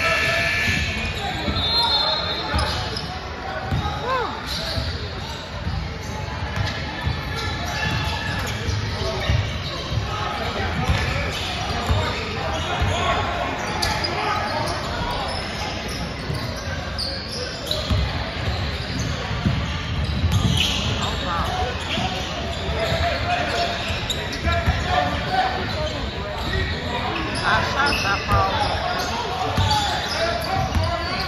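A basketball bouncing on a hardwood court, with chatter from spectators and players echoing in a large gym.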